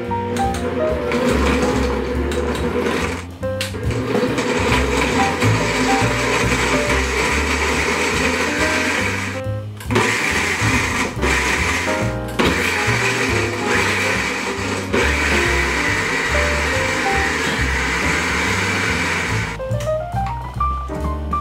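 Tefal Perfect Mix blender motor running, grinding red chili, onion and pear into a paste. It stops briefly about three seconds in and again about ten seconds in, then runs on.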